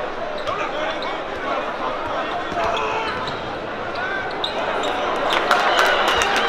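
Basketball dribbled on a hardwood court, with the chatter of many voices echoing in an arena. A run of sharp knocks near the end.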